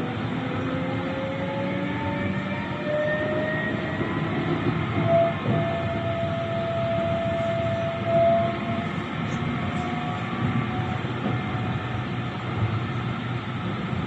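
Electric tram running along street track, heard from inside the car: a steady rumble from the wheels on the rails, with the traction motors' whine rising in pitch as the tram picks up speed, then holding.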